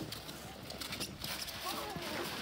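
Inflatable snow tube sliding down a snowy slope, giving an uneven scraping over the snow, with a voice calling out near the end.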